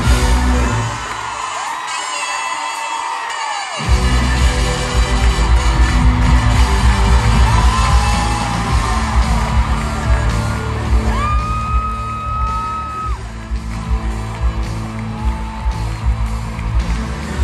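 Live pop-rock band played through an arena PA, recorded from among the audience. The heavy bass and drums drop out briefly, then come crashing back in about four seconds in, with fans screaming and whooping over the music.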